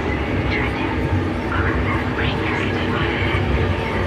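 Dark psytrance track, 180 bpm: a dense deep bass layer under eerie, voice-like samples sliding about in the upper range.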